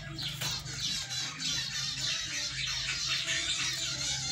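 Many birds chirping at once: a dense, high-pitched chorus of overlapping chirps over a steady low hum.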